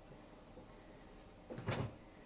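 A wire cage door or panel being shut: a short metallic rattle and knock about a second and a half in.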